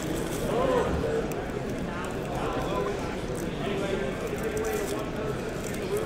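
Indistinct background chatter of voices in a large hall, with light clicks and rustles of trading cards and foil pack wrappers being handled.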